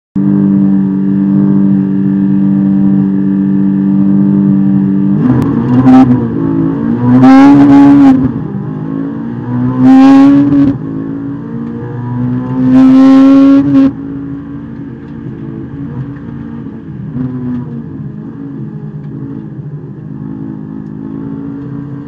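Honda S2000 race car's four-cylinder engine running at steady revs, then pulling hard from about five seconds in with four loud rising revving pulls. About fourteen seconds in it drops suddenly to a quieter, lower drone as the throttle comes off.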